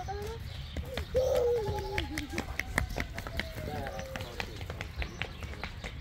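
Quick running footsteps tapping on stone paving, with a high voice calling out about a second in, its pitch falling slowly over a few seconds.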